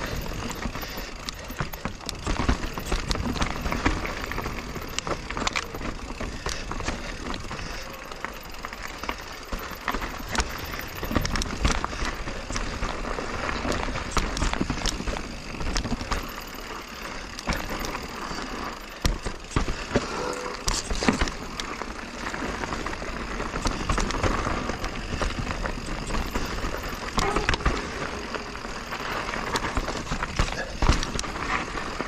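Full-suspension mountain bike (2021 Giant Reign Advanced Pro 29) riding down a rough dirt trail, heard close up from a chest-mounted camera: continuous tyre noise over dirt, roots and rock, with frequent clattering knocks and rattles from the bike over bumps and wind on the microphone.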